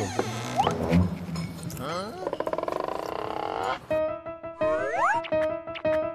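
Edited-in background music with comic sound effects: a jumble of gliding tones and a fast rattling run of pulses, then steady repeating notes with short rising whistle-like glides.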